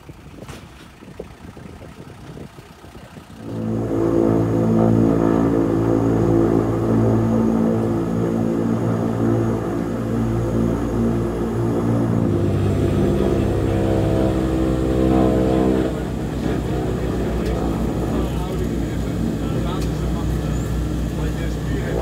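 Twin turboprop engines of a DHC-6-300 Twin Otter (Pratt & Whitney PT6A) running, heard from inside the cabin. They come in suddenly and loudly about three and a half seconds in and run at a steady pitch. From about twelve seconds in there is a regular low pulsing as the aircraft gets ready to taxi.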